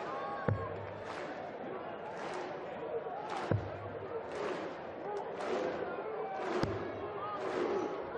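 Three darts striking a Unicorn Eclipse HD2 bristle dartboard, about three seconds apart, each a short sharp thud. Underneath is the steady noise of a large arena crowd, with chatter and calls.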